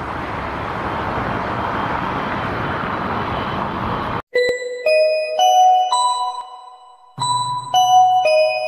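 Steady roar of a jet airliner on landing approach, cut off sharply about four seconds in. It is followed by a short run of bell-like chime notes stepping between several pitches, in two phrases, like an airliner cabin chime.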